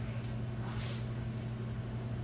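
A steady low hum, with a brief hiss just before the one-second mark.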